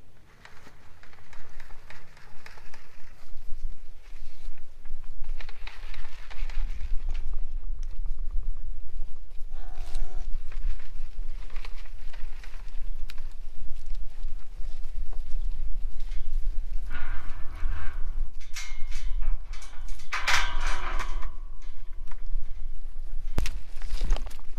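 Wind buffeting the microphone, with a constant low rumble, while cattle move about close by. There is a short wavering animal call about ten seconds in, and a cluster of louder scuffling noises a few seconds before the end.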